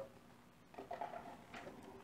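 Faint handling sounds of a packaging box held and turned in the hands: a few light, scattered rustles and taps.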